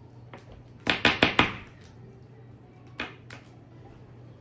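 A quick run of sharp knocks about a second in, then two more around three seconds in, over a faint steady hum.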